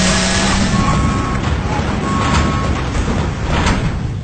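A large engine or heavy machinery running steadily: a dense, noisy drone with a low hum underneath.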